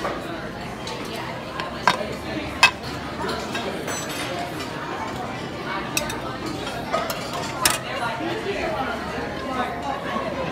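Metal serving spoons clinking against steel buffet pans and a plate, about five sharp clinks with the two loudest a couple of seconds in, over the steady background chatter of a crowded dining room.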